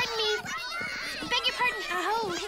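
A crowd of Berrykins chattering over one another in high-pitched, childlike cartoon voices, a busy babble with no clear words.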